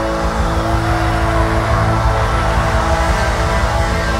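Live rock band playing: electric guitars, bass and drums together, with long held notes over a steady beat.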